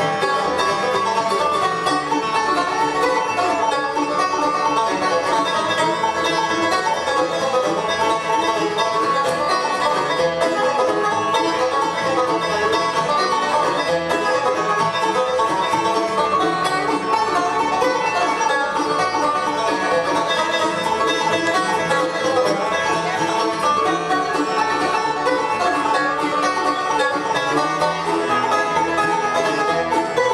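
A bluegrass band playing live, with the banjo to the fore over acoustic guitars and upright bass, keeping an even, steady level throughout.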